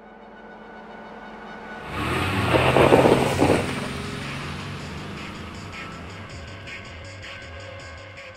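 Sound effects and music of a car-themed channel logo animation: a swelling build, then a loud rushing car pass about two seconds in, settling into music with a light regular beat.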